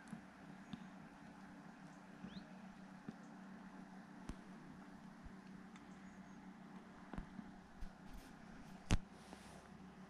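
Faint, steady low drone of a distant motorboat engine, with scattered small clicks and one sharper click near the end.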